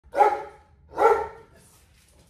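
Protection dog barking twice at a decoy, two loud barks about a second apart.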